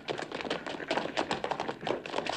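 Footsteps of several men hurrying over hard ground: quick, irregular taps, several a second.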